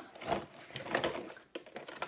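Rustling and light knocking of a UV nail-dryer lamp being handled and lifted out of its box, loudest about a third of a second and again about a second in.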